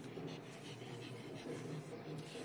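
Deshedding comb being drawn through a Labrador's short coat in repeated short strokes.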